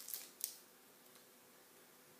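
Two brief soft clicks as a bar of soap is handled and passed from hand to hand in the first half-second, then near silence.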